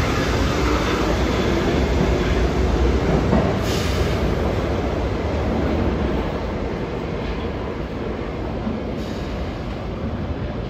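A New York City Subway R62-series train pulling out of the station and receding into the tunnel: a steady rumble of wheels on rail that fades over the last few seconds, with a short high-pitched burst about three and a half seconds in.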